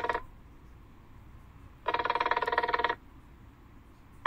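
A Nothing Phone 2a's speaker playing a ringtone preview: a buzzy, fast-pulsing electronic tone. One burst ends just after the start, and another lasts about a second in the middle.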